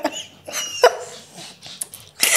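People laughing, with a brief high-pitched squeal of laughter about half a second in.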